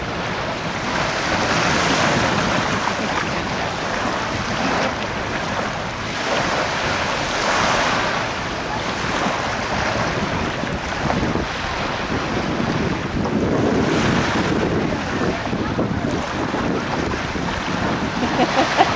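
Small surf washing onto a shallow beach, mixed with wind buffeting the microphone: a steady rushing that swells every few seconds.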